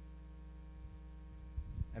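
A steady, faint electrical hum from the recording or sound system, made of several fixed tones, with a voice starting to speak near the end.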